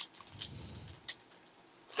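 Quiet handling of trading cards and a foil pack, with a light click at the start and another about a second in, plus a few faint ticks.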